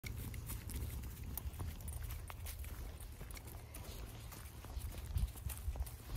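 Footsteps of a walking dog and its handler crunching through dry fallen leaves, a run of small irregular crackles over a steady low rumble.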